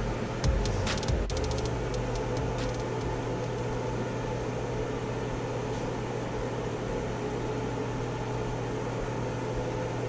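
Background music ending about a second in, followed by a steady machine hum with a constant low tone.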